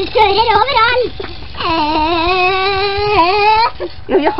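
A high voice making a play noise: a few quick pitched sounds, then one long held note of about two seconds that dips slightly near the end, a vocal imitation of a toy car's engine.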